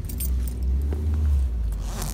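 Low rumble of a vehicle heard from inside its cabin, with a few light metallic jingling clicks over it.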